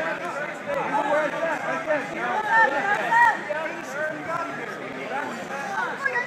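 Crowd babble: many spectators and coaches talking and calling out over one another, no single voice clear.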